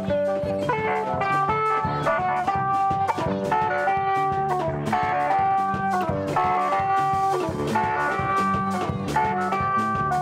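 Tsapiky band playing through horn loudspeakers: a fast, bright electric guitar melody of quick repeated notes over a bass line and a rapid, steady drum beat.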